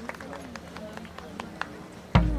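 Applause from spectators dying away, with scattered hand claps growing sparser, and crowd voices under them.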